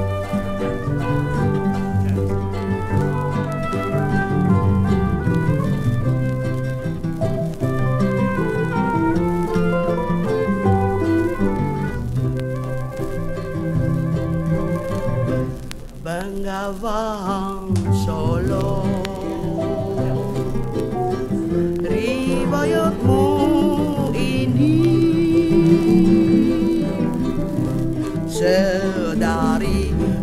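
Krontjong (kroncong) band music with plucked strings and a pizzicato bass line keeping a running accompaniment. About halfway through, a high melody with a wide, wavering vibrato comes in over it.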